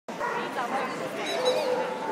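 Many people talking at once in a large exhibition hall, with a dog barking among the crowd noise.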